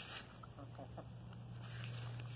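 Hens clucking as they peck at scattered popcorn, with a few short clicks and a steady low hum underneath.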